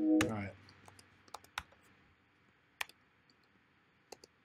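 Music playback from the DAW stops just after the start, dying away within half a second; then near silence with a few sparse, separate sharp clicks from a computer mouse and keyboard as the project is edited.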